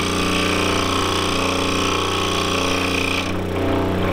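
Scroll saw running, its reciprocating blade cutting through a cherry workpiece: a steady, even mechanical buzz.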